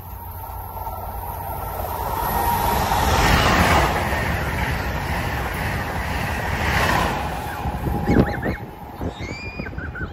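Amtrak Acela high-speed trainset passing through the station: a rush of wheel and air noise that builds to its loudest about three seconds in, holds, then fades after about seven seconds. A brief sharp knock comes about eight seconds in.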